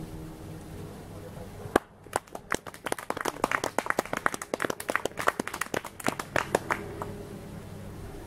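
Small audience clapping: a sparse, uneven round of hand claps lasting about five seconds after a strummed acoustic guitar chord dies away. Soft guitar notes come back near the end.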